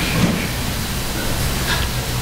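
Steady hiss with a low hum beneath it: the room and recording noise of a church sanctuary, loud in the recording.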